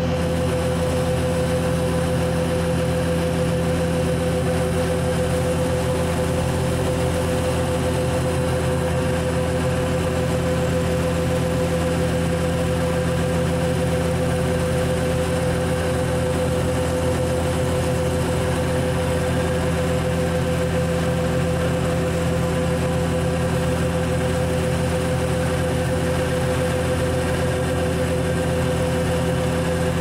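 Steady hum of running ship's deck machinery: a constant mid-pitched tone over a low drone, with no change in pitch or loudness.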